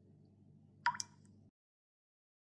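Faint low hum with two short, sharp clicks in quick succession about a second in; the sound then cuts to dead silence halfway through.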